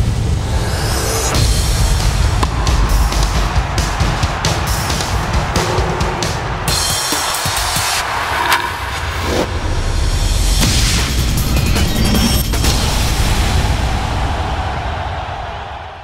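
Sports-show closing theme music with a heavy beat and sharp hits, fading out at the end.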